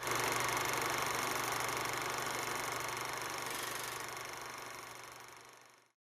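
A steady rushing, hiss-like noise with a low hum beneath it. It starts suddenly and fades out slowly over the last two seconds or so.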